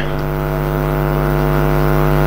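A loud, steady, buzzing drone held at one unchanging pitch with many overtones.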